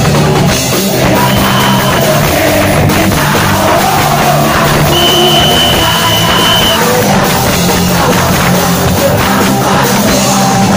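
Punk rock band playing live: drum kit, electric guitars and saxophone, with a singer at the microphone. A single high note is held for under two seconds about halfway through.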